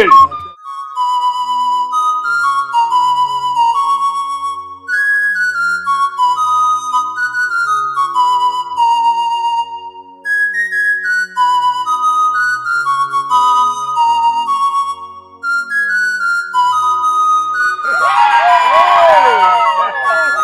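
Flute playing a melody of short stepped notes that rise and fall, over a soft low sustained accompaniment. Near the end a loud, wavering voice breaks in.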